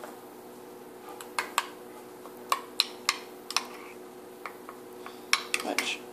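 Metal spoon clinking and scraping against a ceramic bowl while stirring soft food: about a dozen irregular, sharp clicks. A faint steady hum runs underneath.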